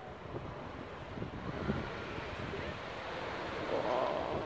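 Wings of a large murmuration of common starlings making a rushing, surf-like whoosh that swells near the end as the flock swoops low overhead.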